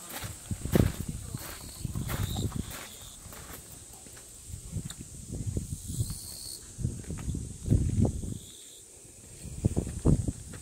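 Footsteps scuffing and thudding on a concrete path, irregular and loudest about a second in and again near the end. A thin, steady high-pitched tone runs underneath.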